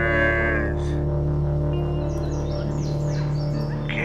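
Background music: a sustained low drone of held tones, with a few short high falling glides in the middle.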